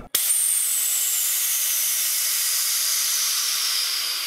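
Pressurised gas hissing out of a pressure fermenter through its pulled pressure relief valve (PRV), venting the vessel; the valve works as it should. It starts suddenly and holds a steady hiss with a faint whistle that slowly falls in pitch.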